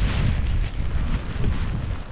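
Wind buffeting the camera microphone: a loud, steady low rumble that dips briefly a couple of times.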